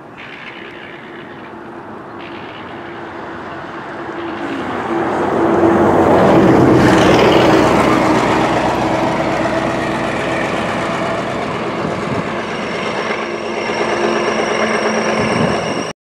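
Road traffic: a heavy vehicle's engine passing close, growing louder to a peak about six to eight seconds in and slowly easing off, then another engine drawing near toward the end.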